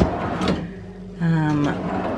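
A plastic freezer drawer being handled and slid out, with a sharp click at the start and another about half a second in. A short hummed vocal sound from a woman follows in the second half.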